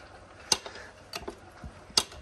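Hand-pump oil filler can clicking as it is pumped, pushing oil through a hose into an axle: a few sharp, irregular clicks, the loudest about half a second in and again at the end.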